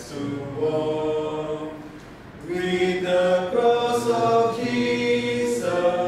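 A small mixed group of voices, three men and a woman, singing a hymn unaccompanied in parts, with long held notes. A brief breath between phrases about two seconds in, then the singing comes back louder.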